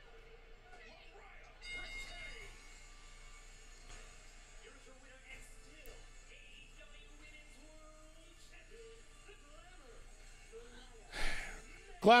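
Faint wrestling broadcast audio playing low in the background: commentators talking over music. A brief louder burst of noise comes near the end.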